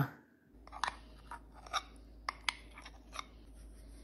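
Faint, scattered small clicks and taps, about eight over a few seconds, as thick melted chocolate is poured from a bowl into a glass bowl.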